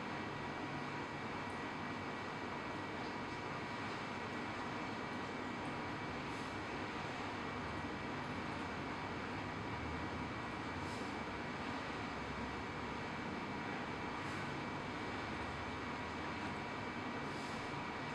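Steady hiss of room tone and recording noise with a faint constant high electronic whine, broken only by a few faint ticks.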